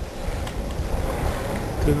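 Wind rushing over the microphone with road rumble as a bicycle coasts downhill. Near the end the squeaky bicycle starts squeaking in short, pitched pulses.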